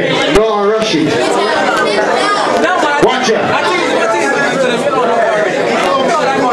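Loud, overlapping chatter of many voices in a crowded room, with people talking over one another.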